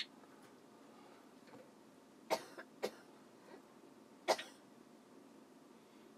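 A person coughing: three short coughs a little over two seconds in, just under three seconds in and about four seconds in, the last one the loudest.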